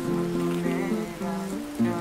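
Background music of slow, sustained acoustic guitar notes changing in steps.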